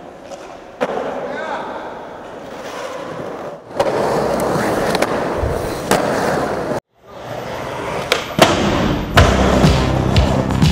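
Skateboard wheels rolling on concrete, with several sharp board knocks and landing impacts. The sound cuts out briefly a little past the middle, and music comes in near the end.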